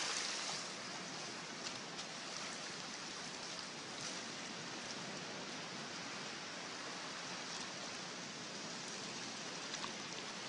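Steady rush of flowing river water, with a few faint ticks.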